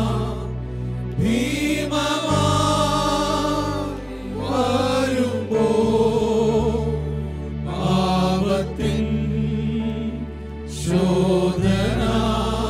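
Male voices singing a Malayalam worship song together, with keyboard and electric bass accompaniment. The singing goes in long phrases with short breaths between them, about four seconds in and again near the end.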